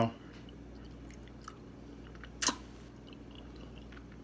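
Quiet mouth sounds of a person chewing food close to the microphone, with one sharp click about two and a half seconds in.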